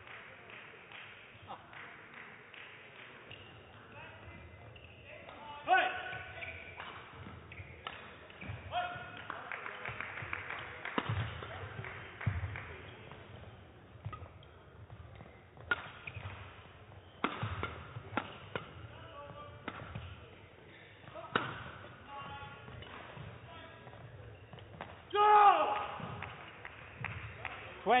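Badminton rally in an indoor hall: rackets striking the shuttlecock about once a second, with shoes squeaking on the court floor between shots, and a player's loud shout near the end as the point is won.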